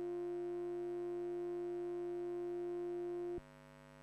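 Eurorack modular synthesizer patch of Mutable Instruments Stages and Tides with a Nonlinear Circuits Neuron, holding a loud, steady, sine-like tone over a quieter drone of several steady tones. The loud tone cuts off suddenly with a click about three and a half seconds in, leaving only the quieter drone.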